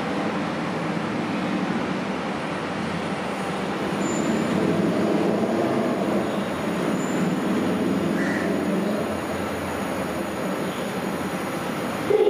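Siemens Inspiro driverless metro train approaching on an elevated track: a steady rumble of wheels on rail that grows louder about four seconds in, with brief faint high wheel squeals near four and seven seconds.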